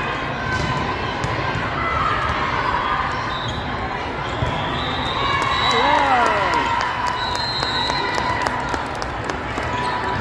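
Hall ambience at an indoor volleyball match: a steady crowd of voices, with many sharp ball hits and bounces on the court and, around the middle, a few short squeaks like sneakers on the court floor.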